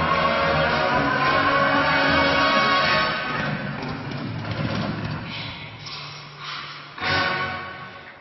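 Ice dance short-dance program music played in the arena. A melody climbs over the first few seconds, the music then drops quieter, and a loud accent strikes about seven seconds in.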